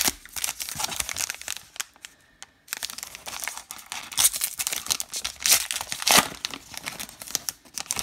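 The wrapper of a 2022 Topps Allen & Ginter X baseball card pack being torn open and crinkled by hand: a run of crackling rustles with a short lull about two seconds in.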